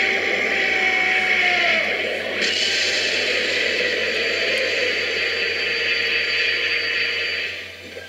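Cartoon energy-blast sound effect: a steady, loud rushing noise that dies away near the end.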